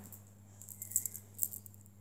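A short patter of light, high-pitched clicks and jingling rattles about a second in, like small hard objects knocking together.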